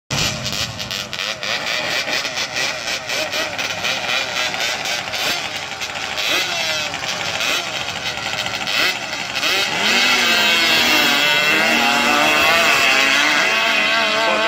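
Quad (ATV) drag-racing engines running rough and revving at the start line. About ten seconds in they launch at full throttle and get louder, the pitch repeatedly climbing and dropping as they accelerate away.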